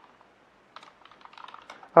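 Typing on a computer keyboard: a quick run of key clicks that starts a little under a second in.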